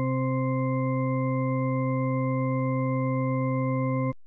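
One steady electronic tone with a stack of overtones, held at a single pitch without change, as a soundtrack sound effect or drone.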